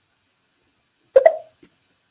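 Silence, then a little over a second in a click and a brief voiced sound from a person, about a third of a second long, like a hiccup or a short 'hm'.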